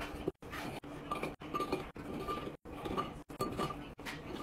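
Chocolate chip cookies being placed one after another into a glass jar, a series of light clinks and taps against the glass with a brief ring after several of them.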